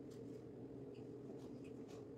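Faint scattered taps and scrapes of a kitchen knife slicing a tomato on a plastic cutting board, over a low steady room hum.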